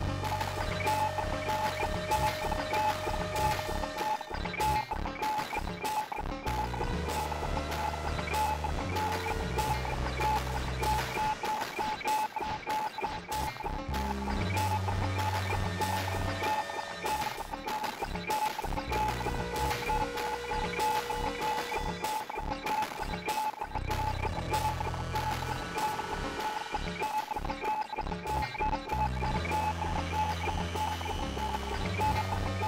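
Electronic music from a modular synthesizer jam (Moog DFAM, Moog Mother-32 and Moffenzeef GMO Eurorack voices, with a Roli Seaboard Block playing VCV Rack). It has a quick, steady run of percussive hits over a low bass line that changes note every second or two, with a held high tone on top.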